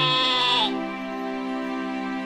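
A sheep bleats once, the call ending just under a second in, over steady, sustained background music.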